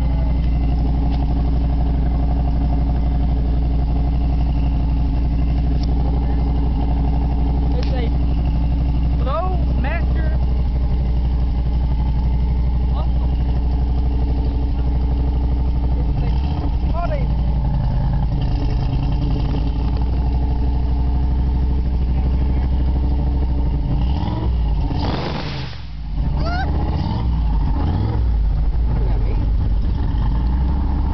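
A Ford 302 V8 idling steadily through a dual exhaust, heard close to one tailpipe as a low, even rumble. About 25 seconds in, a brief rush of noise cuts across it and the level dips for a moment before the idle carries on.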